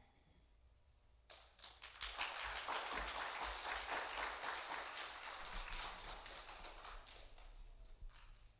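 Audience applause: a quiet moment, then clapping breaking out about a second in, building quickly and fading away near the end.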